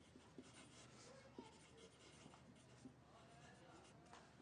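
Near silence: faint room tone with a few soft, scattered clicks and light scratchy rustles.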